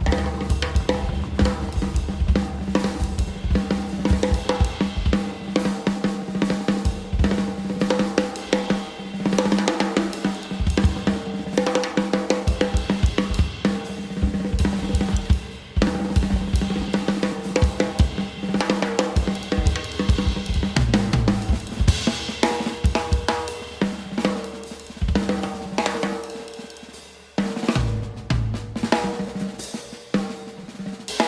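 Acoustic piano trio of drum kit, double bass and grand piano playing driving, techno-style jazz. Dense, fast snare, hi-hat, cymbal and kick-drum patterns sit on top of a steady repeating bass and piano figure. Near the end the groove thins and fades for a moment, then comes back in with a heavy low hit.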